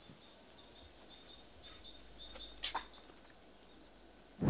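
Quiet garden ambience with small birds chirping in short, high, repeated chirps. A single sharp click comes a little before three seconds in.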